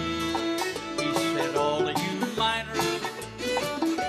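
Bluegrass band playing an instrumental passage between sung lines, with plucked strings and fiddle over a steady bass beat.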